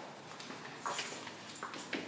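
A few footsteps on a tiled floor, with light rustle from people moving around.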